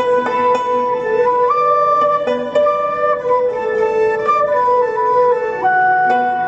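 Chinese traditional ensemble playing a slow melody: a dizi bamboo flute carries long held notes over plucked pipa and guzheng accompaniment.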